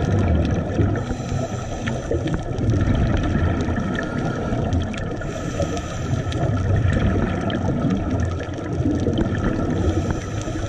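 Underwater sound on a scuba dive: a steady low rumble of water against the camera, with a hissing burst of exhaled regulator bubbles about every four to five seconds.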